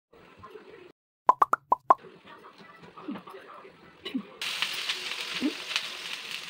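A quick run of five short, pitched plops about a second in, then, from about four and a half seconds in, a steady hiss of water sizzling on a hot dosa tawa.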